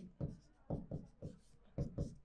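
Marker writing on a whiteboard: a quick series of short, faint strokes as a word is written out.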